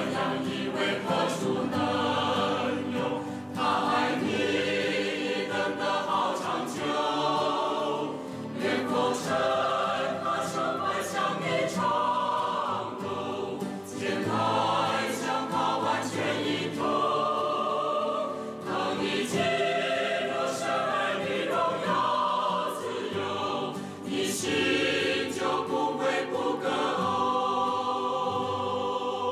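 A choir singing a Chinese Christian hymn, phrase after phrase, with short breaks between the lines.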